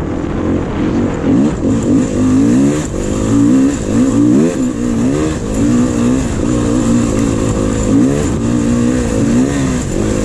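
Beta dirt bike engine under way on a loose trail, revving up and dropping back again and again as the throttle opens and closes.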